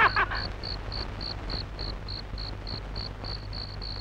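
A cricket chirping in an even rhythm, about four short high chirps a second, over a faint low hum.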